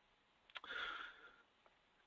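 A person's short sniff, a brief hissy intake of breath through the nose starting about half a second in and lasting under a second.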